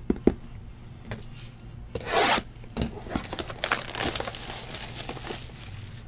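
Plastic shrink-wrap being torn and peeled off a cardboard trading-card box, with crinkling and a few sharp clicks; the loudest rip comes about two seconds in, followed by scattered crinkling and rubbing.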